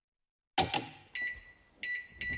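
Intro sound effects: a sudden sharp clack with a short fading tail, then two short electronic beeps at the same pitch.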